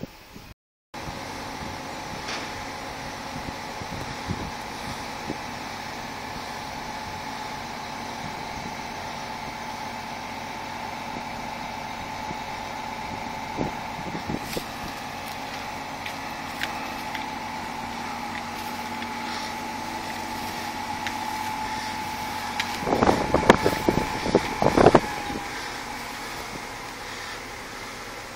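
A truck engine running steadily, with a steady whine over a low hum. A cluster of loud knocks comes a little over twenty seconds in.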